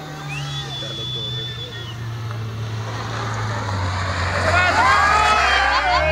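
Renault Clio rally car's engine approaching, its low steady note growing louder through the second half until it is close by at the end. Spectators' voices are mixed in near the end.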